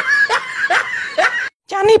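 A man laughing in about four short, falling bursts. It breaks off into a moment of silence, and a man's speaking voice begins near the end.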